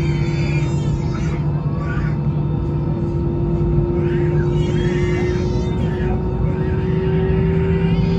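Airliner cabin hum inside an Airbus A320-216 on the ground: the CFM56 engines and cabin air give a loud steady drone with two low tones that creep slightly up in pitch toward the end. Muffled voices come through at times.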